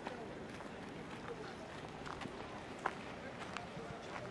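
Outdoor ambience of indistinct distant voices over a steady background hiss, with a few faint clicks and one short sharp tick about three seconds in.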